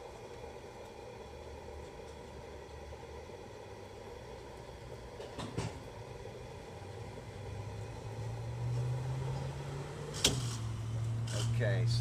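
Gas pump dispensing gasoline through the nozzle into a car's fuel tank: a low steady hum that grows louder in the second half. About ten seconds in there is a sharp click as the nozzle shuts off automatically with the tank full.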